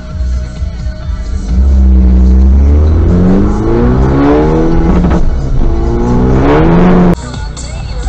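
A vehicle's engine revving hard as it accelerates. Its pitch climbs, drops back and climbs again as it goes up through the gears, then it cuts off suddenly about seven seconds in. Background music plays underneath.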